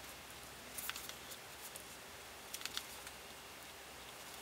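Faint handling noise of hands stitching a mohair crochet chain onto a cloth doll's head: soft rustles with a few short clicks, in two small clusters about a second in and near three seconds.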